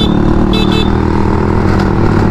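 Motor scooters running steadily at city cruising speed, engine drone under road noise, with a few short high beeps about half a second in.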